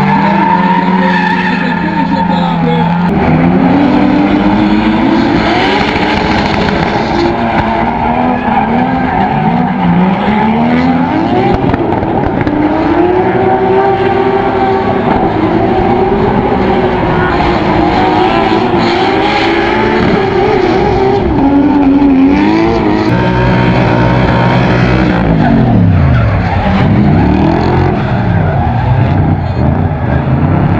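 Drift cars sliding at full lock: engines revving hard, their pitch rising and falling over and over, with tyres squealing.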